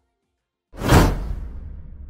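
A whoosh sound effect for an animated subscribe button: it swells suddenly about two-thirds of a second in, peaks a moment later, and fades out over about a second and a half with a low rumble underneath.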